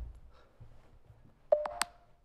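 Short electronic beep from the GhostTube ghost-hunting app on a phone, about a second and a half in: two quick tones, a click leading into each. It marks the app going back to listening mode.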